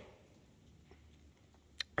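Near silence: faint room tone, broken by one short, sharp click near the end.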